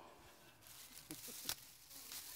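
Faint handling of plastic grocery bags holding canned goods, with a single light click about a second and a half in.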